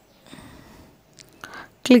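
Faint breath and room noise with a light click, likely the mouse clicking the Add button, then a voice starts narrating just before the end.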